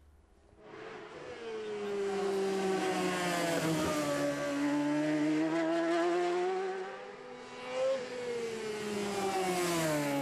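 Superstock racing motorcycle at speed on a road course. The engine note fades in over the first second, then falls and climbs in pitch several times as the bike is ridden hard through bends, easing off briefly around two thirds of the way through.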